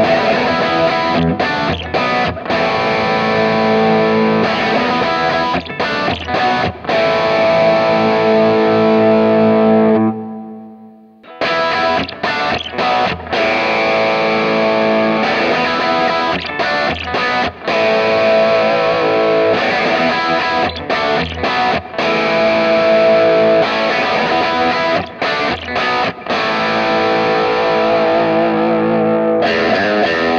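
Distorted electric guitar through a Kemper profile of a jumpered Marshall plexi with a Greenback speaker cab, playing a rock rhythm part twice. First it plays with the full, thick tone; then, after a break of about a second, it plays with an EQ that cuts the deep bass, bass and low mids and adds treble, leaving a thinner, brighter version of that Marshall.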